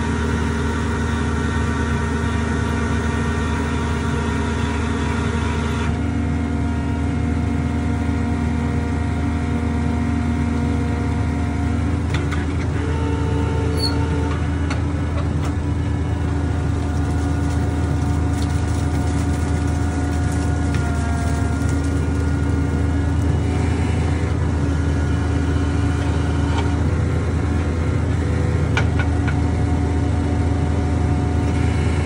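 Fraste drilling rig's engine and hydraulics running steadily while drilling a geothermal borehole. Its tone shifts slightly a couple of times, with a few faint clicks.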